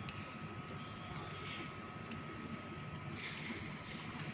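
Quiet background noise: an even low hiss with a faint steady high-pitched tone and two soft swells of hiss partway through. No music or playing from the keyboard.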